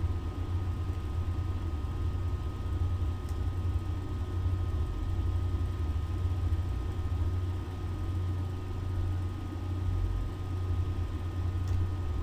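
Steady low-pitched background hum with a light hiss and faint steady tones, with a couple of faint clicks along the way.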